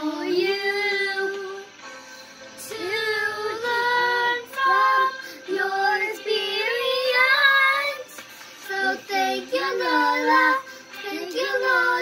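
Two young children singing a song together in sung phrases, with short pauses for breath between the lines.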